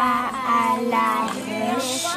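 A high voice singing held and gliding notes, with music.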